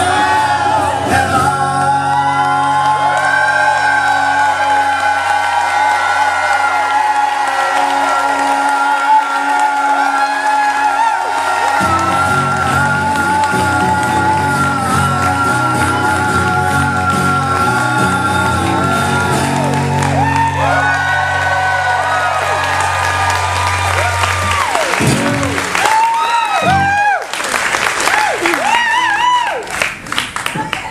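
Male voices hold one long sung note over strummed acoustic guitar to close a live song. The music stops about 25 seconds in, and audience applause and cheering follow.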